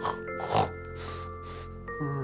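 A man gives one short snore in his sleep about half a second in, over soft background music with long held notes.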